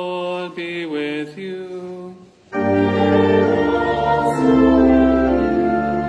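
A single male voice chants a short liturgical phrase unaccompanied, then from about two and a half seconds in the organ and the congregation sing a response together, noticeably louder and fuller.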